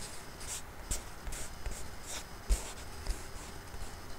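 Light scratching and rustling close to the microphone, with a short knock about two and a half seconds in.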